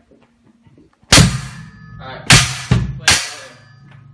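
Drum kit struck in four loud, uneven hits, cymbals ringing after each: one about a second in, then three close together a second later. Sparse, hesitant playing by someone who says she can't play the drums.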